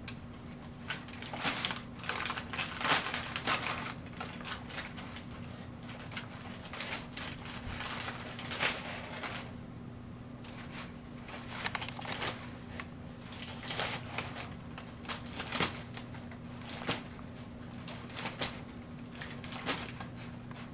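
Brown packing paper crinkling and rustling in irregular bursts as a kitten shifts and paws about inside it.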